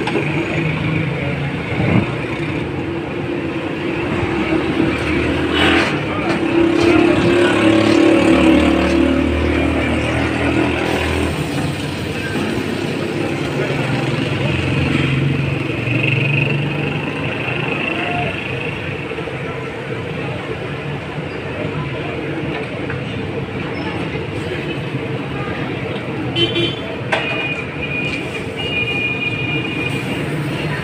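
Busy street noise: traffic running past, with car horns tooting a few times, the last near the end, and background voices.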